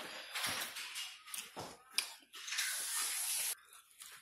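Close-up eating noises: irregular crackling and clicking of chewing near the microphone, then a steady hiss of about a second, starting a little past the middle.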